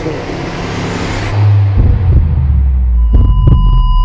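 Trailer sound design: a deep, loud bass rumble swells in as the higher sounds are cut away, and about three seconds in a steady high ringing tone joins it with a few sharp hits.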